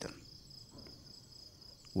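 Crickets chirping faintly in a steady, evenly pulsing high trill.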